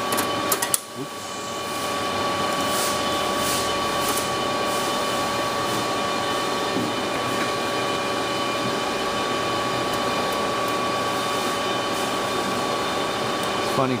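A steady mechanical hum with a constant high whine runs throughout. About half a second in come a few sharp metal clicks from a screwdriver working a screw on the steel power-supply tray.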